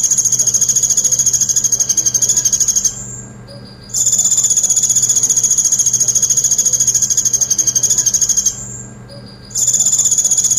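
Van Hasselt's sunbird (kolibri ninja) singing a very high, fast-pulsed trill in long bursts of about four seconds. The song breaks off briefly about three seconds in and again near the end.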